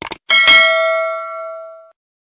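Two quick mouse-click sound effects, then a single bell ding that rings for about a second and a half before cutting off. It is the notification-bell chime of a subscribe-button animation, with the cursor clicking the bell icon.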